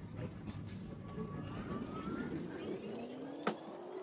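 Supermarket background noise with a low rumble, then a slowly rising whine from about three seconds in and one sharp click.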